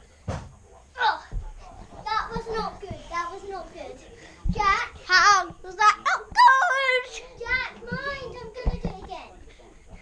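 Children's high-pitched voices, excited calls and chatter that the recogniser could not make out as words, loudest a few seconds in, with a few short low thumps.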